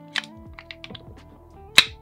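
Small wooden clicks and taps from handling a wooden puzzle box as a peg is unscrewed, with one sharp click near the end, over steady background music.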